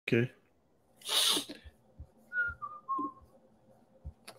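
A short, loud, breathy hiss of air about a second in, then three brief whistled notes, each lower than the last, with a few faint low thumps.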